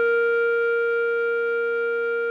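A clarinet holding one long note (written C) that fades slowly, over a soft sustained keyboard chord.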